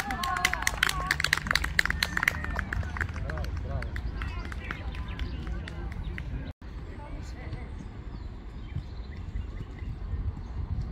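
Shouting voices of players and spectators across an outdoor football pitch, over a steady low wind rumble on the microphone. A flurry of sharp clicks comes in the first few seconds, and the sound drops out briefly about six and a half seconds in, where the recording is cut.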